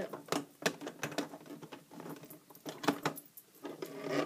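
Irregular clicks and knocks of a plastic rubber-band loom and its crochet hook being handled and moved about.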